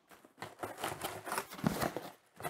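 A cardboard shipping box being handled and opened by hand: a run of light, irregular scrapes, taps and rustles of cardboard.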